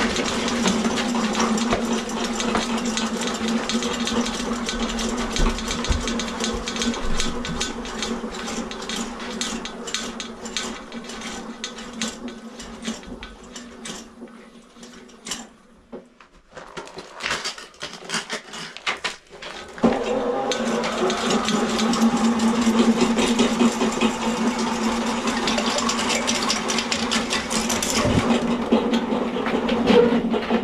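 Electric drain-cleaning machine running, its spinning steel snake cable rattling and clicking as it works through a clogged sewer line. Just past the middle the machine dies down to a few scattered clicks, then starts up again sharply about two-thirds of the way through.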